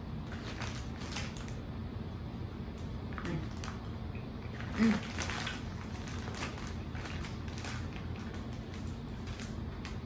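Quiet room hum with a few soft clicks and rustles as people eat chewy candy, and one brief vocal sound, like an "mm", about five seconds in.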